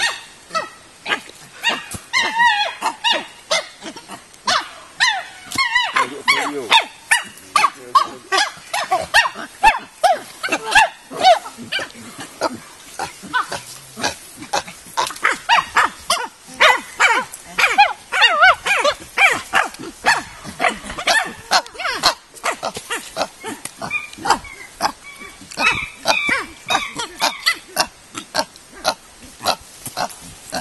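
Several chimpanzees calling over food: bouts of rough grunts and higher wavering calls, strongest a couple of seconds in, again through the middle and near the end, over many short sharp knocks and clicks.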